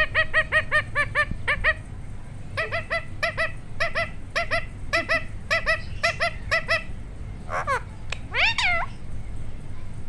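Green parakeet calling in rapid runs of short, high, pitched notes, about five a second, with a brief pause between runs. Near the end come two longer calls that slide in pitch, the second rising and then falling.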